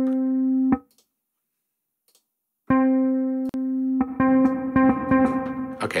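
Kontakt's 'Classic Bass' sampled bass instrument playing a held note that stops about a second in. After a pause the note sounds again about three seconds in, and a second note joins it about four seconds in and rings on.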